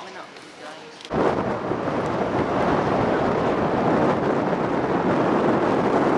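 Wind buffeting the microphone: a loud, steady rushing rumble that starts abruptly about a second in. Before it, faint indoor voices.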